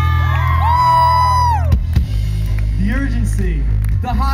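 Rock band playing live, with bass and electric guitars holding a steady low chord. A cluster of high gliding tones rises, holds and falls away over the first couple of seconds.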